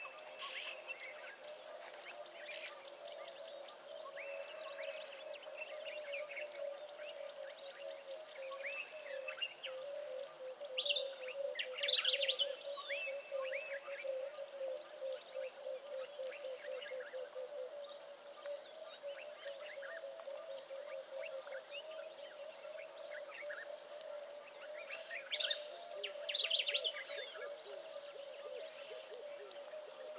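Wild bush ambience: a steady low pulsing trill and a steady high hiss run on underneath, while bird calls come in bursts, loudest about a third of the way in and again near the end.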